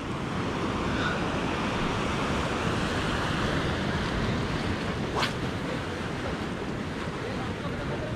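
Surf washing against a rocky shoreline, with wind buffeting the microphone as a steady low rumble. A single brief sharp click about five seconds in.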